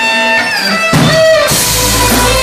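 Blues band playing live: an electric guitar holds and bends sustained lead notes while the bass and drums briefly drop out, then the bass and drums come back in about a second in.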